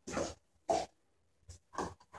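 A dog's short sniffs and mouth noises as it takes treats from a hand, in three brief bursts: at the start, just under a second in, and near the end.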